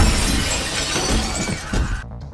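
Glass shattering and showering down right after a shotgun blast: a dense, loud crash of breaking glass that slowly fades.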